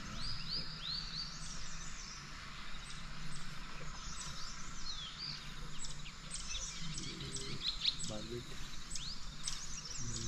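Several wild birds calling in the trees: a quick series of repeated down-slurred notes in the first second and a half, then many short chips and whistled sweeps from different birds.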